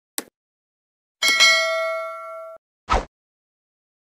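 Subscribe-button animation sound effects: a short mouse click, then a bell ding that rings for about a second and a half before cutting off, followed by a short thump near the end.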